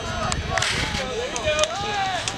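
Several voices shouting and calling out across a soccer field, overlapping one another, with a few short sharp knocks among them.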